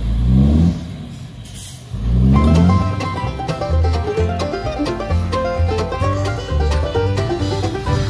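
A loaded dump truck's engine revs twice, near the start and again about two seconds in, as it works across soft muddy ground. From about two seconds in, background banjo music with plucked notes over a steady bass line takes over.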